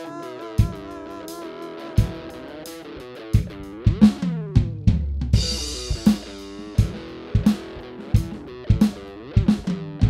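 Electric guitar and drum kit playing a rock groove: held guitar notes with a few scattered drum hits at first, then a steady kick-and-snare beat from about three seconds in, with a cymbal crash about halfway through.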